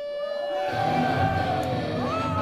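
Live thrash metal band on stage: a steady held tone gives way, about two-thirds of a second in, to the full band coming in with distorted electric guitars and bass.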